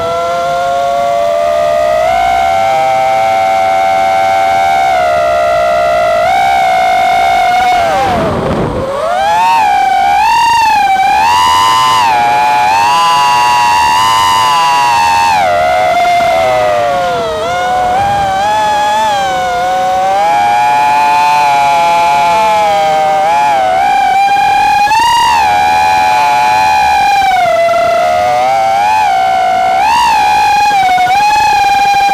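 High whine of the Martian III mini quad's brushless motors and propellers, heard from the quad itself, with several close pitches rising and falling as the throttle changes. About eight seconds in the pitch drops sharply and swoops straight back up, as on a quick throttle chop and punch.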